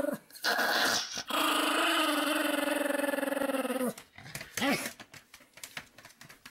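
A Pomeranian growling in drawn-out, pitched grumbles: a short one, then a long one lasting nearly three seconds, and a brief one about a second after that.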